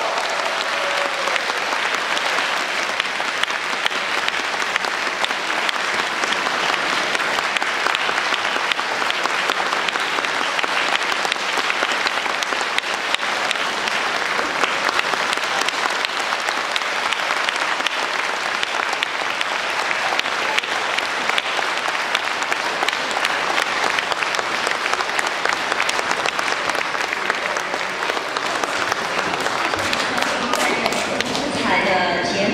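A concert audience applauding steadily and without a break.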